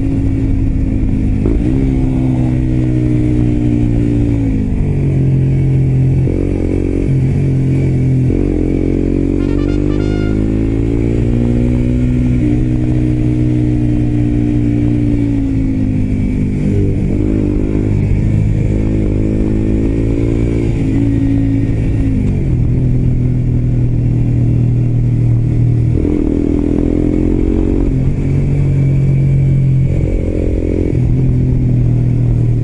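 Suzuki GSX-R125's single-cylinder four-stroke engine, fitted with an aftermarket exhaust, pulling on the move. Its pitch climbs and falls through the bends, with several abrupt drops at gear changes.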